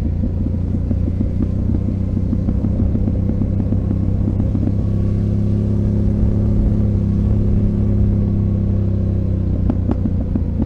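Yamaha Ténéré 700's parallel-twin engine running at low speed on a steep gravel descent, a steady low rumble whose engine note becomes clearer about halfway through. Occasional short clicks and clatter sound over it.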